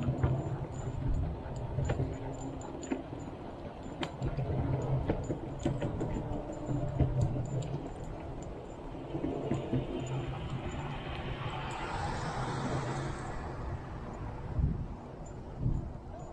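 Light metallic jingling and clinking over steady rolling and wind noise from a bicycle ride. A rushing noise swells a little past the middle and stops sharply about three seconds before the end.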